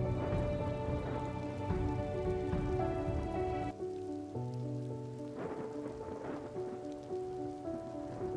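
Steady rain falling, mixed with soft background music of held instrumental notes that change every second or so; the low bass drops out about four seconds in and a new bass note comes in shortly after.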